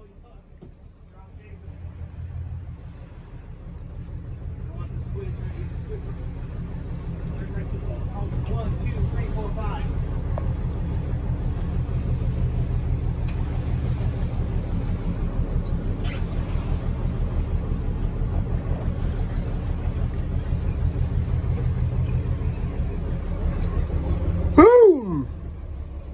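Boat engine running, a steady low rumble that grows louder over the first several seconds and then holds level.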